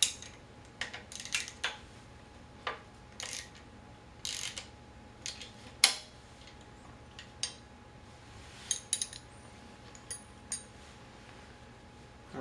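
Irregular sharp metallic clicks and clinks as a wheelchair wheel-lock brake clamp is handled and adjusted on the frame tube, the loudest about six seconds in.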